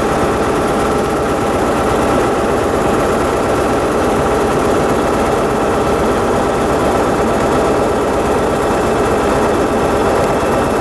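Diesel engines of a South West Trains Class 159 diesel multiple unit running steadily as the train moves slowly out of the platform: an even, unchanging drone with a few steady tones.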